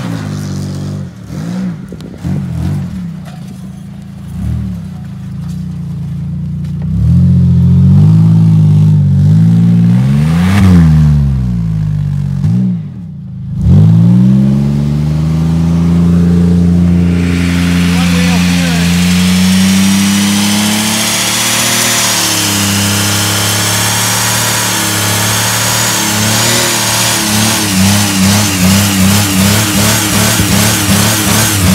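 Pontiac Grand Prix GT's 3.8-litre V6 revving up and down repeatedly, dropping off briefly about halfway, then held at high revs against the brake for a front-wheel-drive burnout. From just past halfway the front tyres spin in place with a growing hiss and wavering squeal as they smoke.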